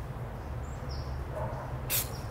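A short burst of hiss from an aerosol spray-paint can, fired once near the end, over a steady low rumble. A faint bird chirp about a second in.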